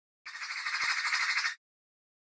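A single harsh, rasping squawk-like sound effect with a fast flutter, lasting a little over a second.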